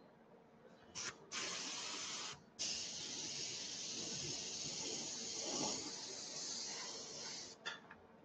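Ammo by Mig Jiménez AirCobra airbrush spraying: a short puff about a second in, a spray of about a second, a brief pause, then a steady spray of about five seconds, ending with one short puff. It is laying on a very transparent coat of thinned, black-tinted paint to take the gloss off the model.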